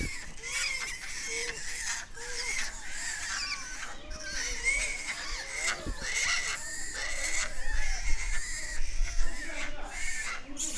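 Japanese macaques calling: many short, arched squeaks and coos overlapping one another, getting louder near the end.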